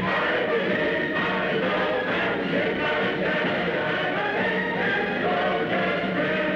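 A choir singing, many voices together, on a 1940s film soundtrack.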